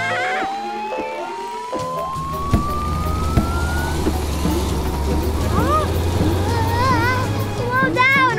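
Cartoon sound effects: a long, steadily rising whistle-like tone over the first half, then a steady low rumble with short squeaky, voice-like calls toward the end.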